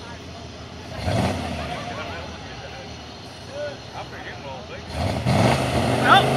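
Rat rod engine revving hard twice, once about a second in and again louder near the end, as it shoots flames from its exhaust. Onlookers' voices can be heard over it.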